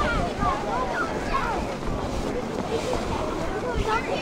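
Wind buffeting the microphone with a steady low rumble, and faint voices calling out in the distance.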